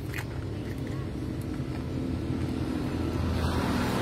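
Diesel engine of a 2008 FAW four-axle truck idling with a steady low rumble, growing louder toward the end.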